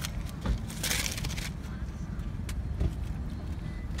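Plastic shopping bags rustling and a cardboard product card being handled, loudest in the first second and a half, over the steady low hum of a car's idling engine.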